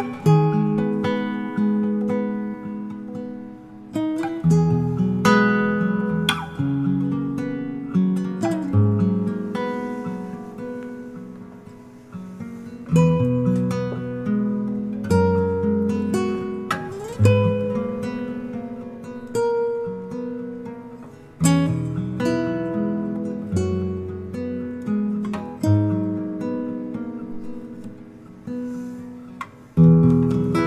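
Background music: acoustic guitar playing plucked notes and strummed chords, each ringing and dying away, with a sliding rise in pitch about halfway through.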